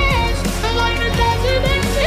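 Talk box lead melody: a keyboard tone shaped by the player's mouth through a tube, holding notes with short slides between them over a backing track with bass and a beat.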